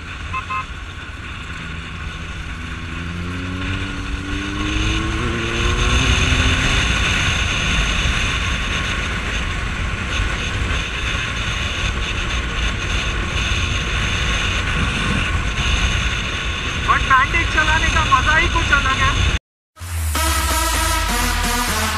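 Suzuki Bandit 1250S inline-four motorcycle engine accelerating, its pitch rising for several seconds, then running steadily at speed under heavy wind rush. A voice calls out near the end, and the sound cuts off suddenly just before the end.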